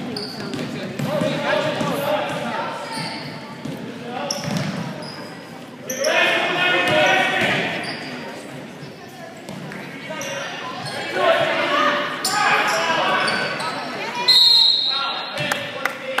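Youth basketball game in an echoing gym: the ball bouncing, sneakers squeaking on the hardwood, and spectators calling out and cheering in bursts. A loud, high-pitched squeal sounds once near the end.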